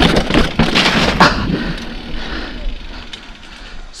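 Mountain bike rolling downhill on a paved trail: the tyres and bike rattle and clatter over rough stone paving for the first second or so, then settle into a quieter, steady rolling hiss on smooth concrete that fades down.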